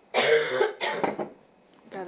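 A person coughing twice in quick succession, both coughs harsh and loud.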